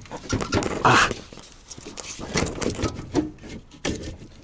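Rubber heater hose of a Trabant 601 being worked onto its duct by hand: rubbing, scraping and irregular clicks and knocks, with one loud breathy rush about a second in.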